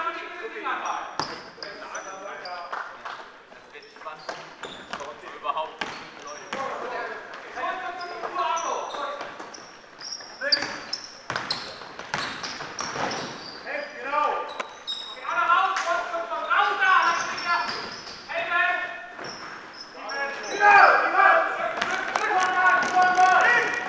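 Basketball being dribbled on a sports-hall floor, with repeated sharp bounces, short high sneaker squeaks, and players' voices calling out, all echoing in the hall. The voices get louder near the end.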